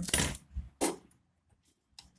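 Motherboard CMOS coin-cell battery being prised out of its metal holder: a few short metallic clicks and scrapes in the first second.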